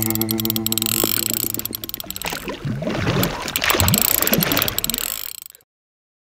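Rapid mechanical clicking over a rushing, splashing noise, fading out about five and a half seconds in.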